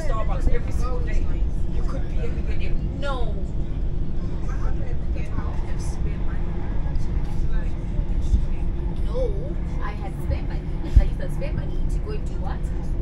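Steady low rumble inside a high-speed commuter train's carriage as it runs along the line, with faint voices of passengers now and then. A single sharp thump comes near the end.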